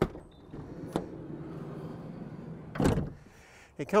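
Sliding side door of a VW Crafter van being opened: the latch clicks about a second in, the door rolls back along its runner, and it stops with a thump near the end.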